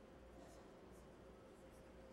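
Near silence: hall room tone with a faint steady hum and a few faint brief rustles.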